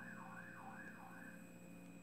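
A faint electronic siren in the distance, sounding as quick rising-and-falling sweeps of tone, about three a second.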